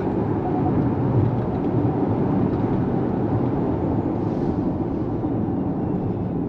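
Steady tyre and road noise heard inside the cabin of a Hyundai IONIQ 5 electric car on the move, with no engine note.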